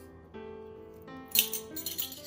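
Background music with steady held notes; about a second and a half in, several quick metallic clinks of a ring of stainless steel measuring spoons being handled.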